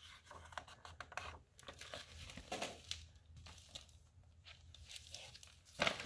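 Stuck pages of a picture book being pried apart and turned: faint, crackly paper rustling, with a louder rustle near the end as the page comes free.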